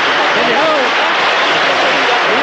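Large concert audience applauding steadily, with voices calling out over the clapping.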